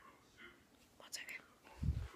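A few faint whispered sounds, then a low rumble of the phone being handled near the end.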